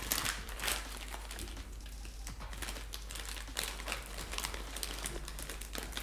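Crinkly plastic Funyuns chip bag rustling in short, irregular crackles as a hand rummages inside it.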